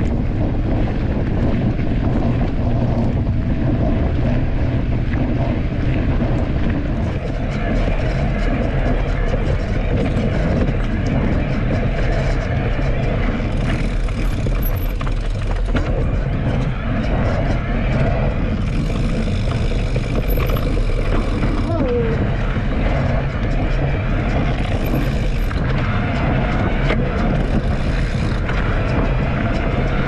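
Wind buffeting the microphone of a bike-mounted action camera while riding an electric mountain bike, mixed with the rumble of knobby fat tyres rolling over a dirt trail, steady throughout.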